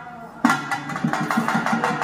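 Pambai, the paired cylindrical drums of Tamil folk temple music, beaten in a rapid, even rhythm of about seven strokes a second, breaking in with a sharp loud stroke about half a second in.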